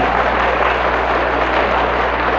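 Audience laughing and applauding at a joke: a steady, even wash of clapping and laughter.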